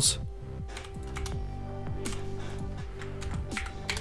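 Computer keyboard typing, scattered key clicks over steady, quiet background music.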